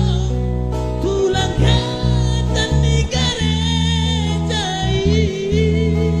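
Male vocal group singing a Batak pop song with vibrato, the voices overlapping in harmony, over acoustic guitar, electric guitar and a steady bass line.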